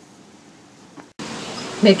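Faint room tone for about a second, then an abrupt cut to a louder, steady hiss of background noise, with a woman's voice starting just before the end.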